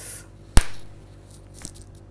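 A single sharp, loud smack about half a second in, with a short decaying tail, followed by a few faint small clicks.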